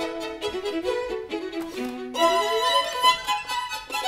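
String octet (four violins, two violas, two cellos) playing a quick passage of many short notes, with a rising run of notes about two seconds in.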